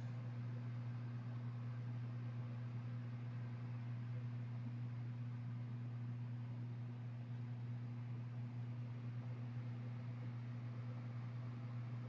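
A steady low electrical hum with a weaker overtone and a faint hiss behind it, unchanging throughout: the background noise of the recording.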